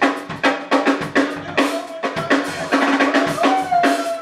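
Live band playing an instrumental groove: a drum kit keeps a steady beat of kick and snare hits, about two a second, under electric guitar and a held keyboard or bass note. Near the end a sustained note glides downward.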